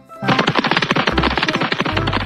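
A fast, even rattle of clicks, like a drum roll, starting just after the start and running on past the end, over children's background music with a steady bass beat.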